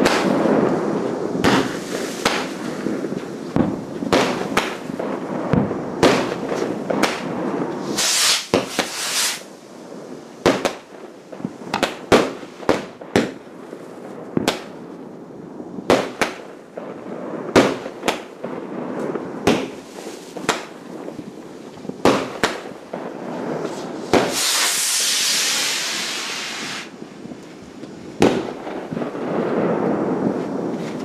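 Fireworks going off: many sharp bangs of aerial bursts at irregular intervals, over a continuous rumble of more fireworks further off. A short hissing burst comes about eight seconds in, and a longer hiss of about three seconds late on.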